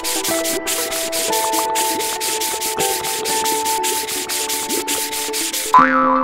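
Cartoon scrubbing sound effect: sponges rubbing in rapid, repeated hissing strokes, over background music. A short rising sweep comes just before the end, as the helicopter is covered in suds.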